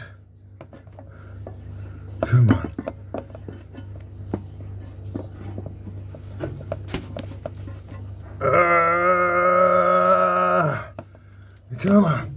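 Small clicks and scrapes of a cable being worked and pulled through a hole in a brick wall. About eight seconds in comes a long held straining groan, lasting a couple of seconds.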